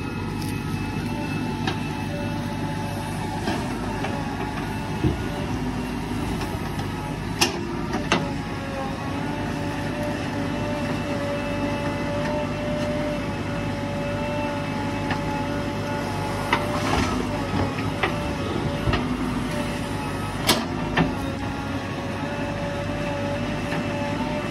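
JCB 3DX backhoe loader's diesel engine running steadily with a steady whine on top as the backhoe bucket digs into soil and stones. A few sharp knocks from the bucket and stones, two about a third of the way in and several more in the second half.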